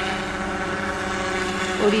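Crop-spraying helicopter flying overhead: a steady, even drone of rotor and engine with a constant pitch.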